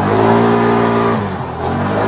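Police car engine pulling hard under acceleration, heard from inside the cabin: a strong, steady engine note that eases off about a second and a half in, then picks up again near the end.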